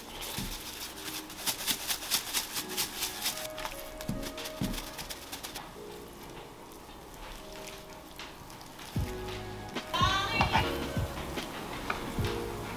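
Seasoning shaker jar shaken over raw deer backstrap, a dry rattle of several shakes a second that stops about five and a half seconds in. A brief pitched whine near the end.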